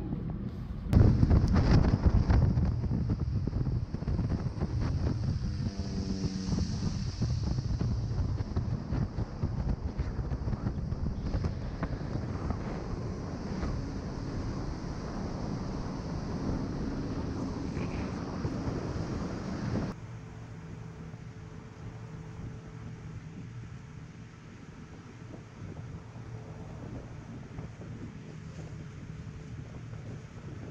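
Motor boat running fast across open water, its engine noise mixed with wind rushing over the microphone, louder from about a second in. About two-thirds of the way through it drops suddenly to a quieter, steady engine hum.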